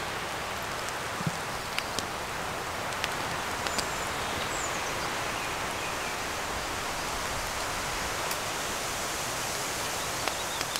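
Steady rain falling in woodland, an even hiss with a few light ticks scattered through it.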